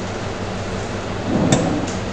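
Steady background hiss with a low electrical hum, broken about a second and a half in by a soft thump and a sharp click, then a fainter click: computer keyboard keys being struck as the lecturer types.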